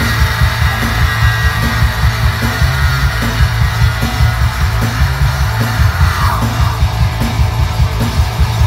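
Live punk rock band playing loud through a club PA, drums driving a steady beat under guitars, with a high note held for about six seconds that slides down near the end.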